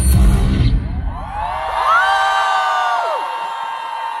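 A bass-heavy pop dance track ends under a second in, and an audience breaks into high-pitched screams and cheering, several voices rising, holding for about a second and falling away together.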